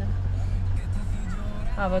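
Steady low rumble of a Toyota Land Cruiser's engine and tyres heard inside the cabin while it drives slowly, with music in the background.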